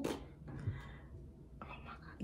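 Quiet whispered speech, following a brief loud breathy exclamation at the very start.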